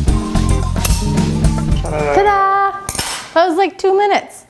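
Metal clinking of rotisserie spit forks being fitted and tightened on a whole chicken, under background rock music with bass and drums. The music stops about halfway through, and short vocal sounds follow near the end.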